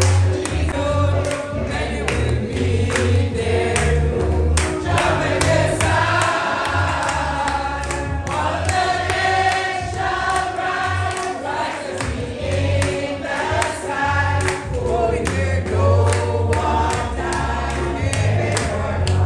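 A choir singing a gospel song to a band accompaniment, with a steady drum beat and a bass line underneath.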